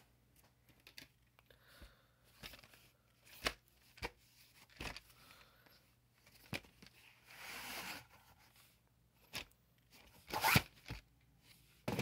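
VHS tapes in their sleeves and cases being handled and set down: scattered knocks and clicks, a rustle lasting about a second a little past the middle, and a louder cluster of knocks shortly before the end.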